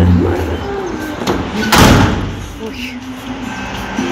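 A building's glass-panelled entrance door slamming shut hard about two seconds in, with one sharp bang.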